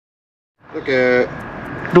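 About half a second of dead silence, then outdoor background noise comes in. A short voice sound follows about a second in, and speech begins near the end.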